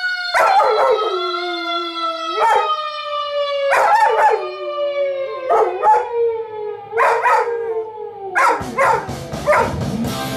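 Dog howling in long, wavering howls along with a song, over a long-held note that slowly falls in pitch and drops away near the end.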